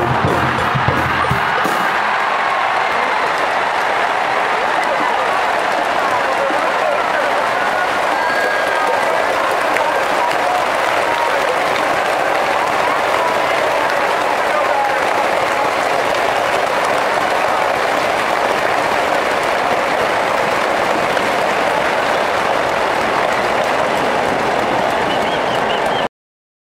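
A brass cheering band's music stops about two seconds in, giving way to steady applause and crowd noise from a large stadium crowd.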